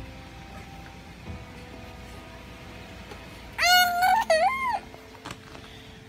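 An infant gives one short, high-pitched squealing cry about two-thirds of the way through, its pitch bending up and down, over faint steady background music.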